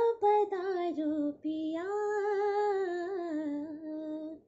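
A young woman singing a Hindi song solo, with no accompaniment. A few short phrases come first, then after a brief pause she sings a long held line that wavers in pitch.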